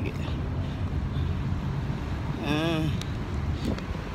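Steady low rumble of outdoor city background noise, with a brief wavering voice about two and a half seconds in.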